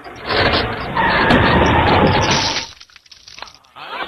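Cartoon crash sound effect of glass vaccine syringes and vials smashing as their crate is broken. It is a loud, sustained crash lasting about two and a half seconds before it dies away.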